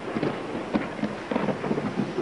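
Rain falling hard, a steady even hiss about as loud as the conversation around it.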